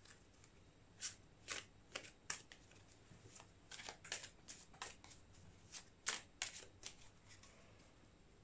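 A deck of tarot cards being shuffled by hand: soft, faint card slaps and riffles at an irregular pace of about one or two a second.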